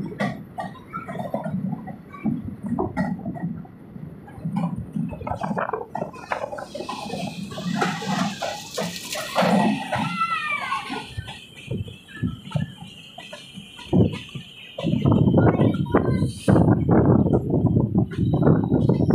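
Passenger train running, heard from an open carriage door: an uneven, knocking clatter of the wheels and carriage, with a gusty rush of wind over the microphone in the last few seconds.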